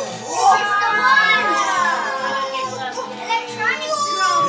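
Children's excited voices and squeals over music with long held notes.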